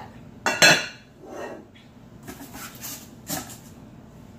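Glass lid of a Visions glass-ceramic Dutch oven clinking against the pot: two sharp ringing clinks about half a second in, then a few softer knocks and rattles as the covered pot is handled.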